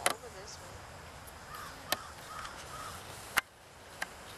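A bird calling a few times in the background, short harsh calls, with a few sharp clicks, the loudest about three and a half seconds in.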